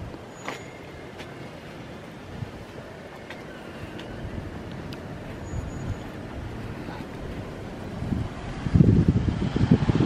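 Quiet outdoor ambience. Near the end, wind starts buffeting the microphone in a louder, choppy rumble.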